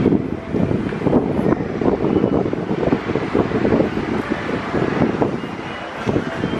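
Wind buffeting the camera's microphone, a steady fluttering rumble.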